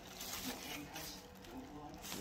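Soft rustling of turnip leaves brushed and handled close to the phone, with a faint voice underneath.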